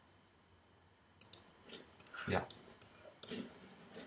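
Several sharp computer mouse clicks, a few in quick pairs, as colours are picked in a drawing program.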